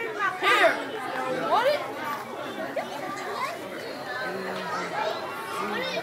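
Children's excited voices, chattering with a few high squeals sliding steeply up or down in pitch.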